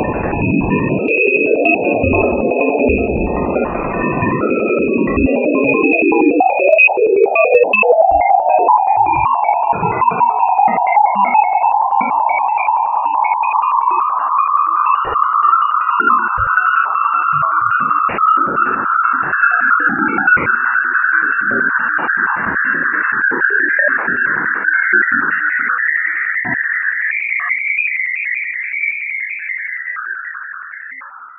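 Sonified radio and plasma-wave emissions recorded by the Juno spacecraft near Jupiter's moon Ganymede. It opens with a low, rushing wash and a steady high tone, then after about six seconds turns into an eerie whistling band that rises slowly and steadily in pitch almost to the end.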